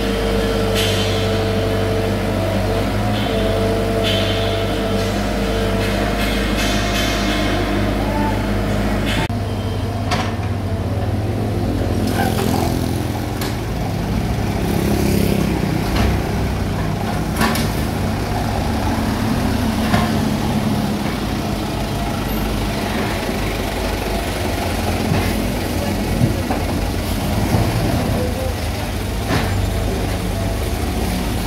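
Komatsu PC75 excavator's diesel engine running under load while it loads soil into a dump truck, with scattered knocks and clunks of earth and rubble landing. The steady engine tone changes abruptly about nine seconds in, and sharp knocks come every few seconds after that.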